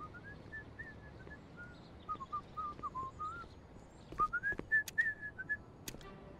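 A person whistling a casual, wandering tune in short gliding notes, with a few light clicks in the second half.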